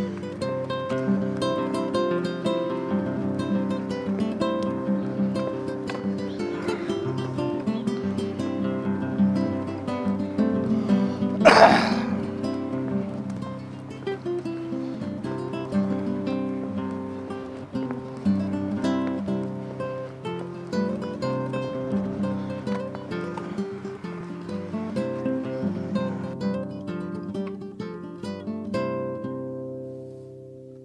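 Background music of acoustic guitar, plucked and strummed, with one sharp louder sound about a third of the way in; the music begins to fade out near the end.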